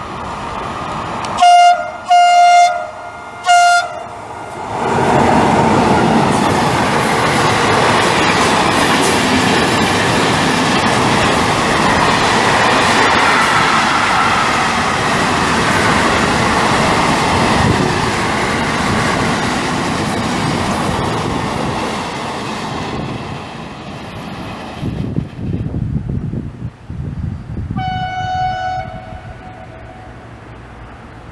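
Electric freight train's horn sounding three short blasts, the driver's greeting, then the train passing through the station at speed with a long rushing rumble and wheels clattering over the rails that fades out after about twenty seconds. A further horn blast sounds near the end.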